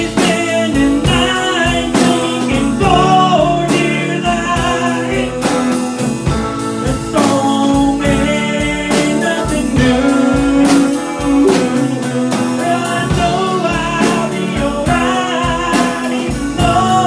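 Live blues band playing a slow song: guitar and drum kit keeping a steady beat, with a man singing over them.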